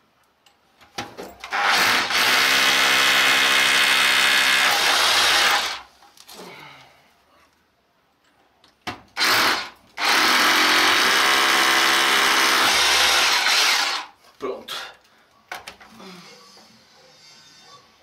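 Power drill boring into a concrete wall, running at a steady pitch in two long bursts of about four seconds each, with a short burst just before the second.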